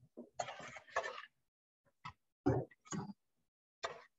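A few short knocks, clicks and rustles of handling close to a wired earbud microphone, as someone moves about and bends down to plug in an electric stove.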